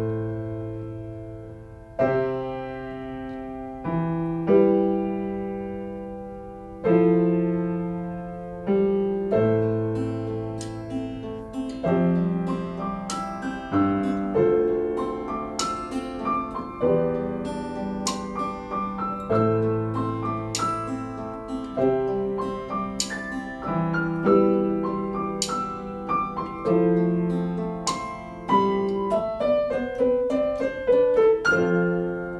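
Piano and acoustic guitar playing a slow, mellow instrumental: struck chords over low bass notes, sparse at first and growing busier about ten seconds in.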